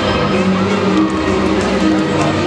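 Instrumental accompaniment music for a rhythmic gymnastics routine, played over a sports hall's loudspeakers, with long held notes.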